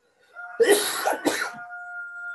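Two quick coughs, the second shorter, over a faint steady high tone.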